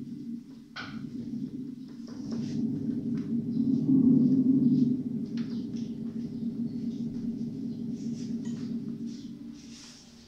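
Electronic keyboard sounding a low, rough sustained tone rather than a melody. It swells to its loudest about four to five seconds in and then fades, with a few light clicks along the way.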